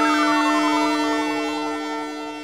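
Synthesizer jingle: a held chord with one tone sliding steadily downward through it like a siren, starting to fade near the end.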